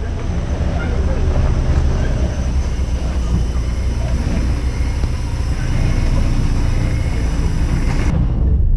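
Wind buffeting the camera's microphone: a steady low rumble with a faint hiss above it.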